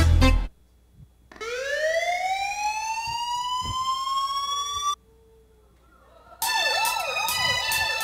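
Recorded music stops, and after a short gap a single rising electronic glide tone, crossed by fainter sweeping tones, plays for about three and a half seconds and cuts off suddenly. After another gap the music starts again with a warbling tone over steady high notes.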